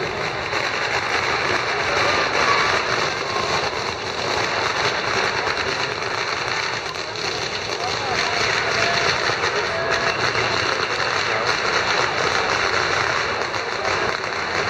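Strings of firecrackers going off in a dense, steady crackle, heard over crowd chatter.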